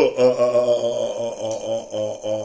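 A man's voice drawn out on one low, level pitch in a chant-like drone, pulsing evenly without breaking into separate words.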